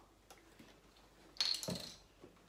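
A single brief clink of kitchenware about one and a half seconds in, with a short ringing tone.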